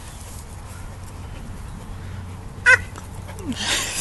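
A short, high-pitched vocal 'ah' about two and a half seconds in, after a stretch of faint steady background, followed by a brief breathy sound near the end.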